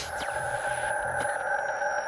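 Electronic logo-sting sound design: a steady synthesized chord held after a whoosh, with faint high tones gliding slowly down and a few soft ticks.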